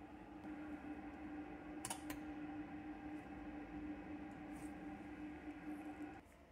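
Electric melting furnace running as it begins heating from cold: a faint, steady hum with a single click about two seconds in.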